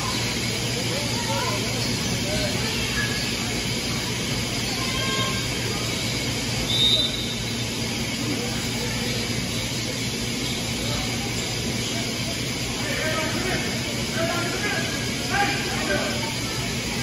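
Basketball game ambience in a gym: a steady hum, with scattered distant shouts and voices from players and spectators. A brief high squeak comes about seven seconds in.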